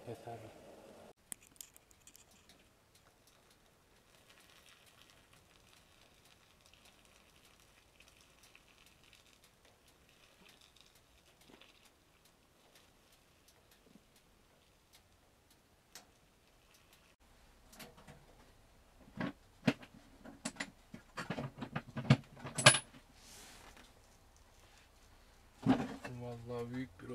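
Hot water poured faintly from a kettle into a glass teapot. After a quiet spell comes a run of sharp metallic clinks and knocks, one with a short high ring.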